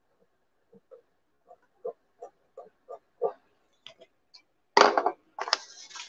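A woman chuckling softly to herself in short, evenly spaced breaths that grow louder, breaking into a louder laugh or burst of breath near the end.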